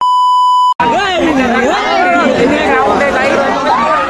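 A steady test-tone beep, played with TV colour bars as an edit transition, lasting under a second and cutting off sharply. After it comes a dense crowd of many voices chattering at once.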